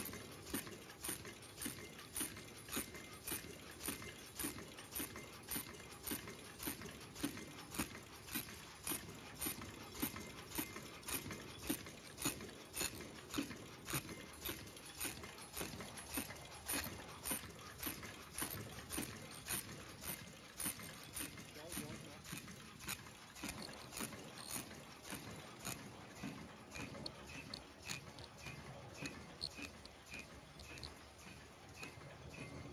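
High-speed disposable face-mask making machine running, with a steady mechanical clack about twice a second, about one machine cycle per mask at its rated 100–120 masks a minute.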